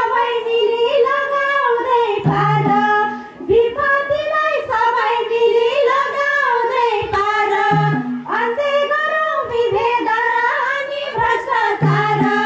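Group of women's voices singing a Nepali Deusi-Bhailo folk song, with a madal hand drum giving occasional low strokes.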